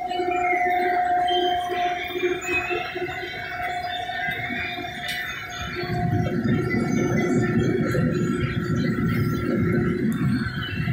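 Combine harvester heard from inside the cab while cutting soybeans: a steady machinery whine made of several high tones. About six seconds in, a louder, rougher low rumble joins it.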